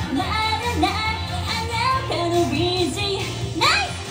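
A woman singing a pop song live into a handheld microphone over amplified instrumental accompaniment with a steady bass. A quick rising slide comes near the end.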